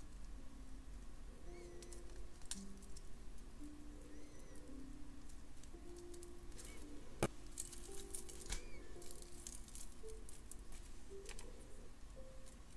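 Soft background music with slow stepping notes, over a few sharp metallic clicks of jewelry pliers closing a jump ring. The loudest click comes about seven seconds in.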